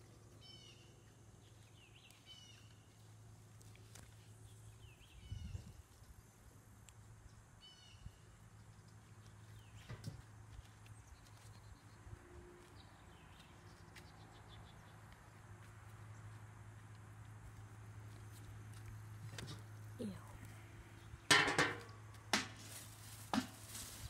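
Quiet outdoor ambience: a steady low hum with a few faint short chirps in the first several seconds. A low thump comes about five seconds in, and a cluster of louder knocks or handling bumps comes a few seconds before the end.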